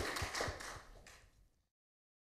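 Audience applause fading away, then cutting off to silence a little under two seconds in.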